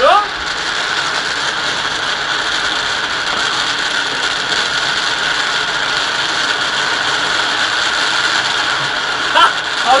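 Dense crackling of many distant New Year's Eve fireworks going off at once, blending into a steady, even hiss.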